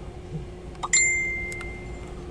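A single clear, bell-like ding about a second in, ringing out and fading over the next second, over a faint steady hum.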